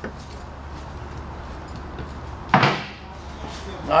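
Painted metal recovery-tank lid being handled and set down: one brief clatter about two and a half seconds in, over a low steady hum.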